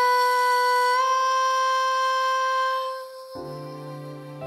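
A female voice holds one long, steady high note unaccompanied, lifting slightly in pitch about a second in and fading out near the three-second mark. The accompaniment's chords come back in just after.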